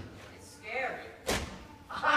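A single sharp thump, like something being slammed, a little past halfway, with voices just before it.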